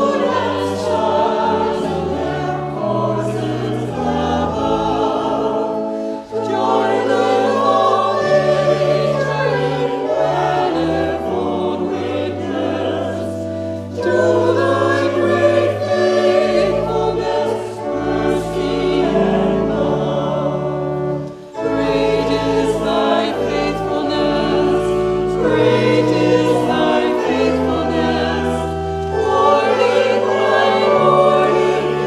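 Congregation and choir singing a hymn over organ accompaniment, with long held bass notes under the voices. There are short breaks between phrases about 6, 14 and 21 seconds in.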